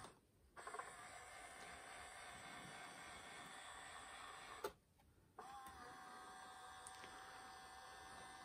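Small electric gear motor of a 1/12 scale HG P805 Patriot launcher model running faintly as it turns the missile launcher. It runs for about four seconds, stops briefly, then runs again with a steady whine.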